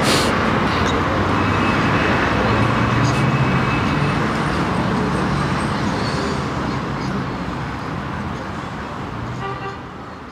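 Steady outdoor city ambience: a continuous wash of noise with faint voices of passers-by, gradually fading out over the second half.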